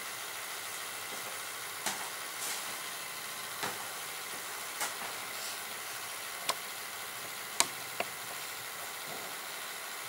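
Steady hiss with about six sharp, scattered taps: boots stepping and turning on a stone-tiled floor.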